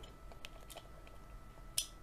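Faint handling of a small die-cast model car in the fingers, with a few light clicks and one sharper click near the end.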